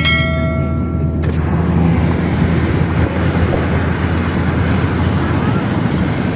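Steady road and engine noise heard from inside a car driving on a wet expressway. For about the first second a held ringing tone with overtones sounds over it, then stops.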